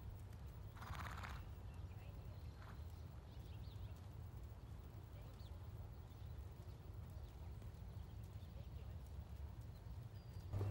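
Faint sounds of a Standardbred horse walking on arena sand, over a steady low rumble, with a short pitched sound about a second in.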